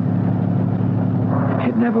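Steady drone of a car engine heard from inside the moving car, a radio-drama sound effect, holding one even pitch over a light road hiss. A man's voice comes in near the end.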